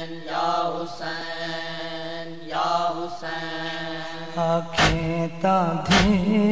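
Voices chanting long, drawn-out notes over a steady low drone in the unaccompanied opening of a Punjabi nauha. Near the end two heavy beats fall about a second apart: the chest-beating (matam) that keeps time in a nauha.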